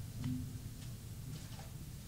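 Quiet room with a steady low hum and a few faint, scattered clicks and taps.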